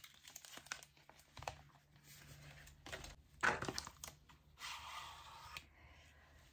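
Rustling and scraping of a cardboard makeup-palette package being opened, the palette slid out of its sleeve, with a sharper noise about three and a half seconds in and a longer rustle around five seconds.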